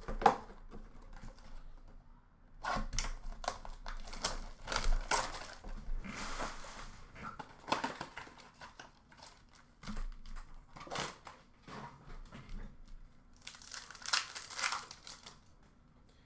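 Hockey card packs from Upper Deck blaster boxes being torn open by hand: the wrappers crinkle and tear in irregular bursts, with a longer rustling tear about six seconds in.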